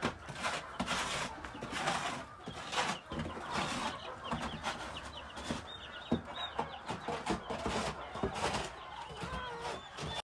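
Young chicks peeping in quick, short, high chirps inside a wire-mesh brooder cage, over a few scattered knocks and rattles of the mesh door as a cat paws at it.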